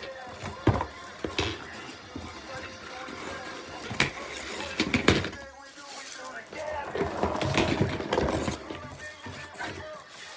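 Unpacking a cardboard box: a few sharp knocks and clinks as small items are handled, then a longer stretch of packing paper rustling and crumpling near the end.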